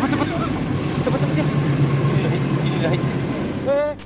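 Car engine and road noise heard from inside a moving car on a rough phone recording, with people's voices talking over it. Just before the end, a short rising glitch sound effect.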